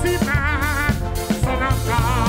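A live band playing: a drum kit with regular strikes over a steady bass, and a melody line whose held notes waver in pitch.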